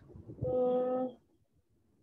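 A voice giving a short, level hum ("mmm") on one steady pitch, lasting well under a second, about half a second in.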